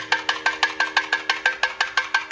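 Ritual percussion music: a fast, even beat of sharp, ringing strokes, about six a second, over a steady held drone.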